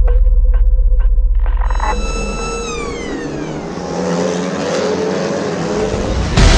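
Background music with a beat about twice a second, then a TCR touring car passes at speed. Its engine note falls in pitch as it goes by and is followed by a broad hiss of engine and tyre noise.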